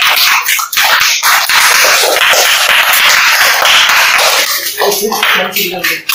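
A small audience clapping, dense and loud, with a voice or two coming in near the end.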